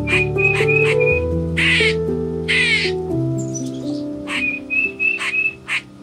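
Background music with sustained notes, with two harsh squawks from a blue-and-yellow macaw about two seconds in.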